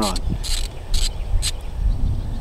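An insect chirping in short, high-pitched bursts about twice a second, over a steady low rumble.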